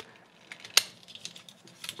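Small clicks and handling noises of a Takara Tomy MP-47 Hound Transformers figure's parts being folded and moved in the hands during transformation, with one sharp click about three-quarters of a second in and a few lighter ones near the end.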